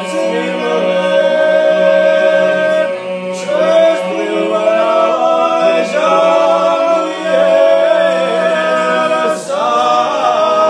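Small group of men singing a Georgian polyphonic song a cappella, several voices in harmony over a steady held low drone. The phrases break briefly about three seconds in and again near the end.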